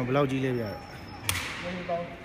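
A voice calls out over the first second, then a single sharp crack of a sepak takraw ball being kicked, with a short ring in the hall.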